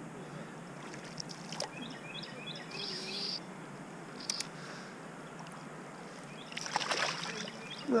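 A hooked rainbow trout being played in the river: a brief burst of water splashing about six and a half seconds in, over a steady low background of moving water.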